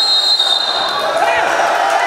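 Wrestling referee's whistle blown once: a steady, high, single whistle lasting about a second. It is followed by shouting voices in the hall.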